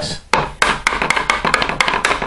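Resin-and-fibreglass-stiffened armour piece being rapped against a workbench: a quick run of hard knocks, several a second, starting about a third of a second in. They sound out its rigidity now that the resin has set solid.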